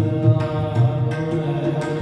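Sikh kirtan music: a harmonium holding steady chords over a tabla beat, with deep bass-drum strokes and sharp treble strokes coming at an even pace.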